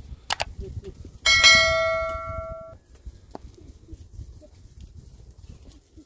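A bell-like metallic ring, struck once about a second in, fading for about a second and a half and then cutting off suddenly; it is the loudest sound. A sharp click comes just before it, and there is a low rustling underneath.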